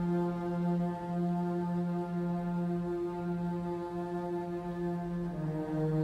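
Slow ambient background music: a low sustained drone chord that holds steady, then moves to a lower chord about five seconds in.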